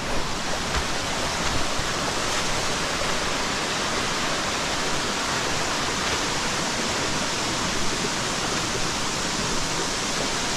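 Steady rush of a waterfall, an even sound of falling water at a constant level.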